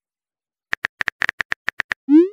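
Phone-keyboard typing clicks, a sound effect: a quick run of about ten short taps at roughly eight a second, starting under a second in after silence.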